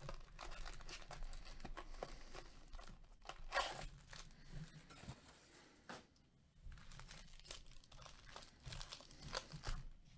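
Foil trading-card pack wrappers crinkling and tearing as they are handled and opened. Faint, irregular rustles, with a louder crinkle about three and a half seconds in and more crackling near the end.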